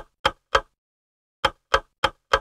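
Clock-ticking sound effect for a quiz countdown timer: sharp ticks about three to four a second, with a pause of nearly a second in the middle before the ticking resumes.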